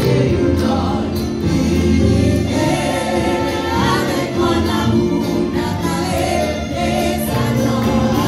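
Congregation and choir singing a gospel hymn in Haitian Creole, backed by instruments with sustained bass notes.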